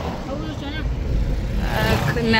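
Road noise from a moving vehicle, a steady low rumble, as another vehicle passes close alongside.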